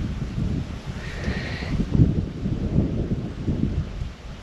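Wind buffeting the microphone: a low, uneven rumble that rises and falls with the gusts.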